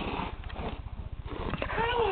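A toddler's short, high-pitched wordless vocal sound near the end, its pitch rising then falling, with a few light knocks from hands on the photo album.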